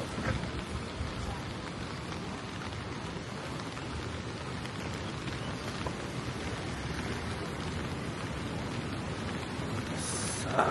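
Steady rain falling, an even, unbroken hiss.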